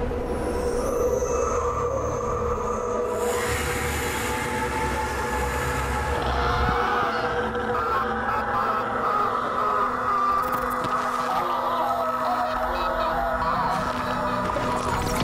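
Soundtrack of a horror short film: a dense, steady drone with sustained tones and a train-like mechanical rumble. The low rumble drops away about seven seconds in, and a lower held tone comes in near the end.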